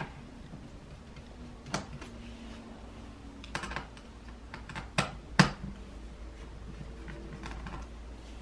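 Scattered light clicks and taps of a small screwdriver and tiny screws being worked out of a laptop motherboard inside a plastic chassis, the two sharpest clicks about five seconds in.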